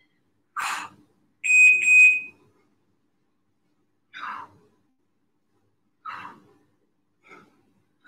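A single high-pitched electronic beep, just under a second long, about one and a half seconds in. Around it come a few short breathy puffs from people exhaling as they do crunches.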